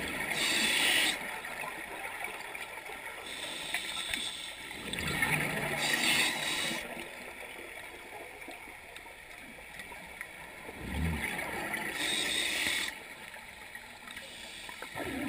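Scuba diver breathing through a regulator: three bursts of gurgling exhaust bubbles about six seconds apart, with quieter water noise between breaths.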